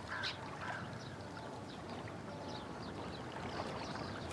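Outdoor waterside ambience: a steady wash of moving water with faint, scattered bird calls.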